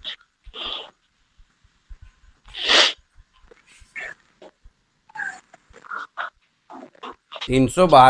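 A man's short breathy mouth noises and faint mutters in a pause of his talk, the loudest a sharp breathy burst about three seconds in; he starts speaking again near the end.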